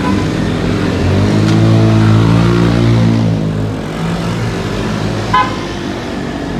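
Motor scooters riding past, one engine swelling in pitch and loudness and then falling away between about one and three and a half seconds in. A horn beeps at the very start and gives one short toot near the end.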